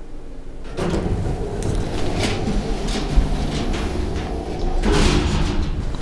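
Elevator car arriving and its sliding stainless-steel doors opening. A rumbling, clattering noise starts suddenly about a second in, and a louder burst of noise comes near the end.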